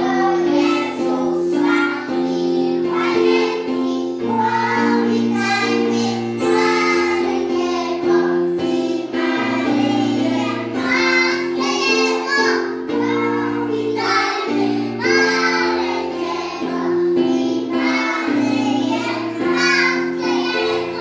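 A group of young children singing a song together over an instrumental accompaniment, whose held chords change every second or two.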